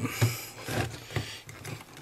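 Quiet handling noise of locking pliers being seated on a small chip on a circuit board, with a few light ticks.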